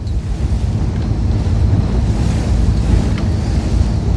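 Wind buffeting the microphone aboard a fishing boat at sea: a steady low rumble under an even hiss of wind and waves.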